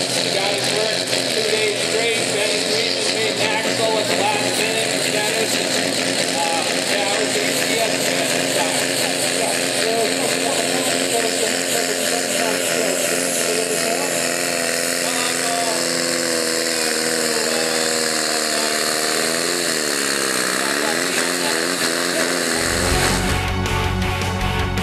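Tractor-pulling tractor's engine running hard at full load while it drags the weight sled down the track. The revs dip and climb back up a few seconds before the end. Heavy music with a strong beat takes over about a second and a half before the end.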